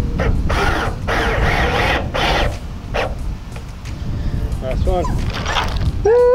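Cordless driver running screws into metal roofing panels in about four short bursts, each half a second to a second long, over the first three seconds. Wind rumbles on the microphone throughout.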